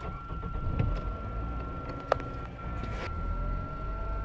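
A car engine starting and running at idle, heard from inside the cabin, with a couple of sharp clicks in the first two seconds. The idle is being checked after the throttle body was cleaned of heavy oil and dirt deposits that had upset the idle speed.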